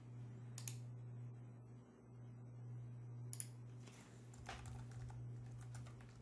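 Faint computer keyboard keystrokes: a single click about half a second in, another around three seconds, then a quick run of keys near the end as a file name is typed, over a steady low hum.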